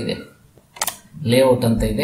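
A single sharp computer-mouse click a little under a second in, between stretches of speech.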